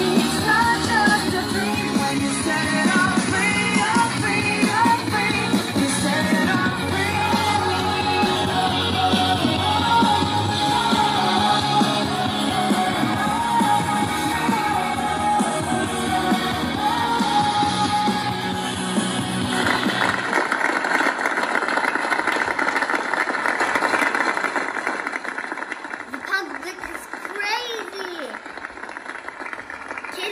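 Recorded pop song with a female lead vocal and a steady band backing. About two-thirds of the way through the music stops and a steady rushing noise takes over, with a few short shouts near the end.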